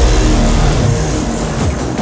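Music with a car engine sound mixed in, starting with a sudden loud hit and slowly fading away.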